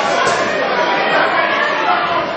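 Boxing crowd at ringside: a steady din of many overlapping voices talking and calling out, echoing in a large hall.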